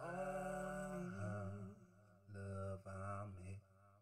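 A song: a singer holding long notes with a slight vibrato over a low bass line. The voice drops out for about a second partway through, leaving the bass, then comes back with two more held notes.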